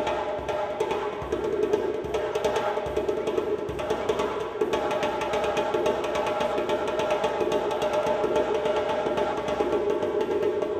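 Djembe hand drumming in a fast, steady, dense rhythm, played as dance music.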